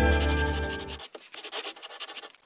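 Music fades out in the first second, giving way to a scratchy pen-on-paper writing sound effect: quick rubbing strokes of uneven loudness.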